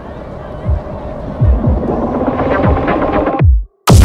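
Electronic dance music: a muffled build-up with sparse kick-drum thumps that rises and brightens, cuts to a brief silence, then the drop hits just before the end with a loud, fast, full beat.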